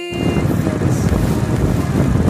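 Wind buffeting the microphone with a low road rumble from a moving vehicle, coming in as the last notes of electronic music end about half a second in.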